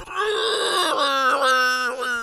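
A man laughing in one long, high-pitched wail that runs almost the whole time.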